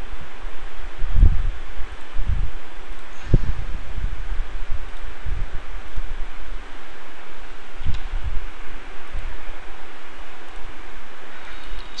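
Steady hiss of an open microphone with irregular low rumbles and bumps, like breath or handling on the mic.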